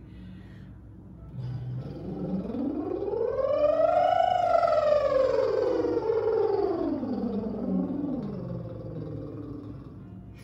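A woman's lip trill, lips buzzing over a sung tone, on one long siren-like glide: the pitch climbs for about two and a half seconds to a peak, then slides slowly back down, louder at the top and fading near the end. It is a vocal warm-up exercise meant to make the lips vibrate and relax the throat.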